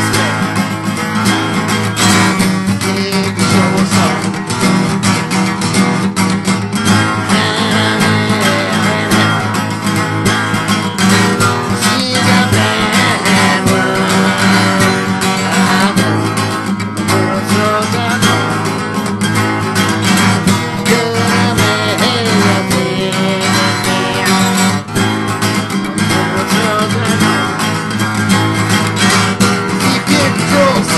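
Acoustic guitar played continuously at a steady, full level.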